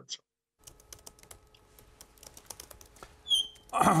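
Faint, irregular clicking of a computer keyboard being typed on, over a low steady hum. A throat-clearing comes in near the end.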